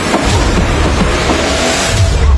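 Trailer sound-design whoosh: a dense rushing noise over the film's music, which cuts off sharply at the end.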